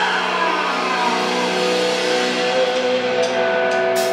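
Electric guitars of a live rock band holding sustained, droning notes with amp feedback and no drums, a falling pitch slide in the first second or so.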